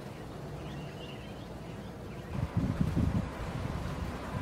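Wind buffeting the microphone in gusts from a little over two seconds in, over a faint outdoor background with a few faint high chirps in the first second.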